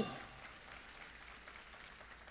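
Faint, steady hiss of room ambience in a large hall, with the tail of an amplified voice dying away at the very start.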